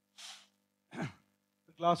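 A man's quick breath in close to a headset microphone, then a short voiced sigh falling in pitch about a second in; he starts speaking near the end.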